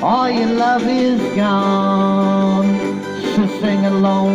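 A man singing into a handheld microphone over guitar music, sliding into a note at the start and then holding long sustained notes.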